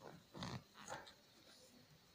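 Near silence, with a few faint, brief rustles as nylon socks and bedding are handled.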